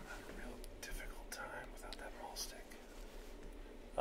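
A faint, low voice murmuring, close to a whisper, with a few soft clicks.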